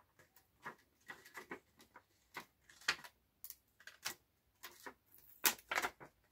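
Acetate sheet and card being handled and pressed into place on a paper-craft box: irregular crinkles and clicks, with the loudest cluster near the end.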